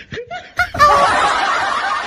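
Laughter from several voices at once, starting about two-thirds of a second in after a few short vocal sounds.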